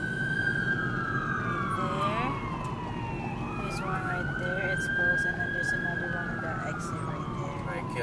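Police siren wailing in slow cycles, rising, holding, then falling, twice over, heard from inside a moving car with road noise beneath it.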